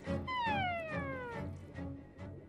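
Cartoon sound effect: one smooth whistle-like tone falling steadily in pitch for about a second as a drop of paint stretches off the tip of a paintbrush, over soft background music.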